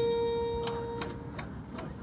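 A single sustained note from the marching band's show music fading away, with four light ticks about 0.4 s apart as it dies out.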